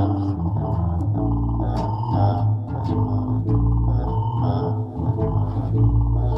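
Electric bass playing sustained low notes, blended with a Buchla modular synthesizer doing granular synthesis through its 208r and Dual Defect Processor Model 289 modules. A repeating figure with bright high tones returns about once a second.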